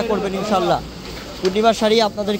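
A man talking in a fast, animated voice: speech only.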